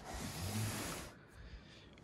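A long, breathy exhale like a sigh, swelling and fading over about a second, with a faint hum of voice under it.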